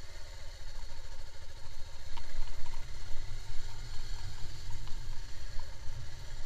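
Motorcycle running at low speed over a rough dirt lane, a steady low engine and road rumble with a few small clicks and rattles.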